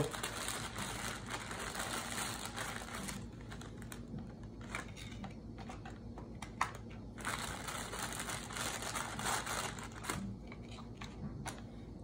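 Crinkling of a thin plastic graham-cracker sleeve being opened and handled. It is busiest in the first few seconds and again later on, quieter in between.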